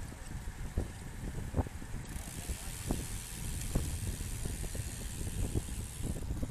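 Wind buffeting the microphone of a handlebar-mounted bike camera while riding, over tyre and road rumble, with scattered knocks from bumps in the road. A high hiss comes in about two seconds in.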